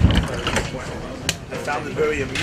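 A few sharp, irregular clicks and knocks over low voices in a crowded room.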